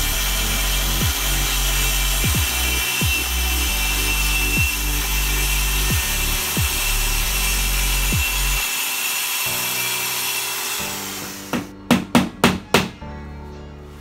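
Handheld electric power saw cutting through plywood, a steady sawing noise that fades out about three-quarters of the way through. It is followed by a quick run of about six sharp knocks.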